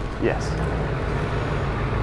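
A vehicle engine idling steadily, a low even drone under a brief spoken word.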